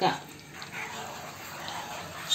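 Wooden spatula stirring thick, cooking banana jam in a non-stick pan, heard as a faint soft scraping and squelching.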